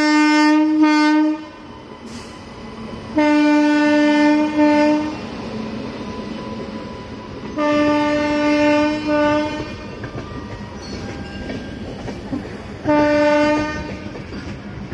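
Horn of an Indian Railways WAP-7 electric locomotive sounding four blasts of one steady note, each one to two seconds long with a brief break near its end, about every four seconds. Between the blasts, the clickety-clack of passenger coaches rolling past close by.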